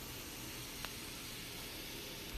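Diced potatoes frying in a pan, a steady low sizzle, with one faint tick a little under a second in.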